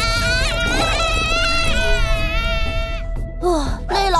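Cartoon sound effect of a high-frequency sonic attack: a shrill electronic tone that wavers up and down in pitch over a steady lower hum, cutting off suddenly about three seconds in. A short falling sound follows near the end.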